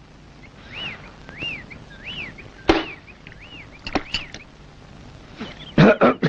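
A bird calling repeatedly: short whistled notes that rise and fall, about one every two-thirds of a second. A single sharp crack a little under three seconds in, and a few clicks about a second later.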